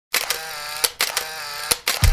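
Title-animation sound effect: sharp camera-shutter-like clicks with a steady buzzing hum between them, in three short bursts about three-quarters of a second apart.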